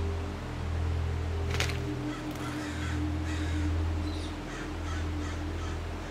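A series of harsh crow caws, repeated several times over a low, swelling music drone, with a single sharp click about a second and a half in.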